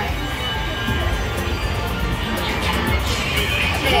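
Electronic music and steady chiming tones from casino slot machines, with crowd chatter beneath.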